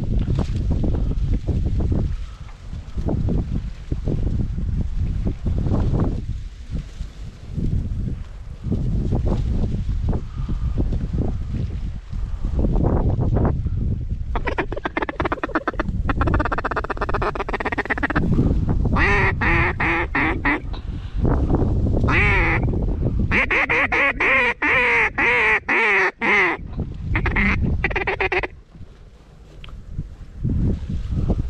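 Wind buffeting the microphone, then from about halfway in, several quick runs of duck quacking, each a rapid string of quacks, lasting until shortly before the end.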